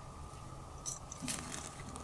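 Faint scuffs and a few light clicks, starting about a second in, as a Megaphobema robustum tarantula strikes an insect held out on metal feeding tongs. A steady low room hum lies underneath.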